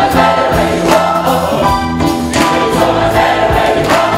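Large mixed gospel choir singing a song in harmony over a band accompaniment with a recurring beat.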